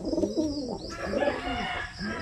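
Racing pigeons cooing: two low, rolling coos one after the other.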